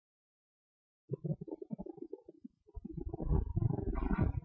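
Silent for about the first second, then irregular low rumbling and buffeting on the camera's microphone, growing louder toward the end.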